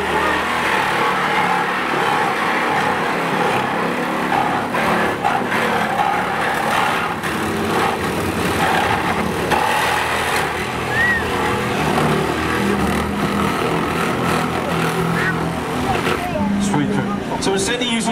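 Small engine of a hydraulic rescue-tool power pack running steadily, with voices and crowd chatter over it.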